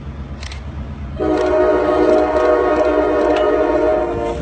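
Locomotive air horn sounding one long blast, a chord of several steady tones, starting about a second in over a low rumble as the snow-clearing train approaches the crossing.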